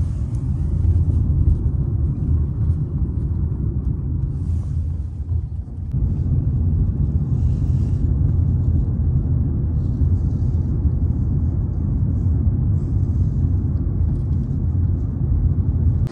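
Steady low rumble of road and engine noise inside a moving car, easing off briefly about a third of the way through before it picks up again.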